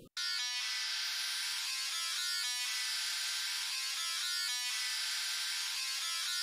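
Distorted metal rhythm guitars heard only through their top end, the band above the 7 kHz low-pass filter with everything below it filtered away: a quiet, thin sizzle in which the chord changes can still be followed.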